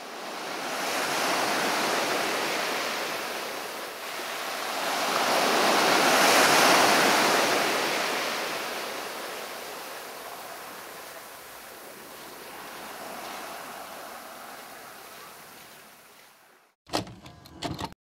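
Sea waves washing up a pebbly beach, swelling and receding in three slow surges before fading out. A few short sharp clicks near the end.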